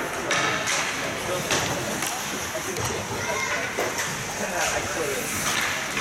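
Ice hockey rink ambience: indistinct voices of players and spectators over a steady background hum, with a few short sharp scrapes or clacks from skates and sticks on the ice.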